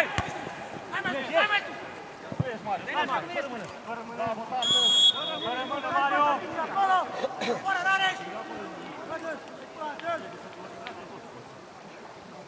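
Players and spectators calling out across a football pitch, with voices throughout and a short, steady whistle blast just before five seconds in.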